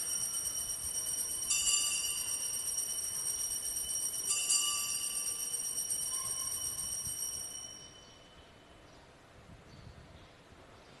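Altar bells rung at the elevation of the chalice during the consecration, signalling the elevation. A bright metallic peal rings on from just before, is rung again about one and a half seconds in and again about four and a half seconds in, and fades away by about eight seconds.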